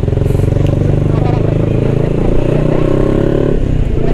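Motorcycle engine running at steady revs under way, heard from the rider's seat. The steady engine note breaks off and changes about three and a half seconds in.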